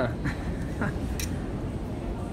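Steady background noise of a busy hall, with a man's voice trailing off at the start, a couple of brief faint voice sounds and a single sharp click about a second in.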